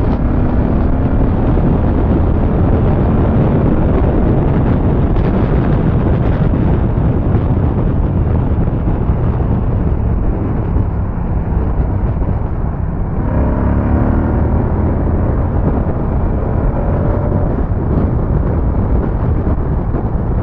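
Moto Guzzi V100 Mandello's 1042 cc V-twin engine running at highway speed under heavy wind rush on the microphone. Its engine note climbs about two-thirds of the way through as the bike accelerates.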